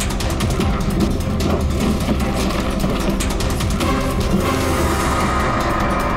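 Dramatic TV background score: a steady low drone under fast ticking percussion, with a higher sustained note coming in about four seconds in.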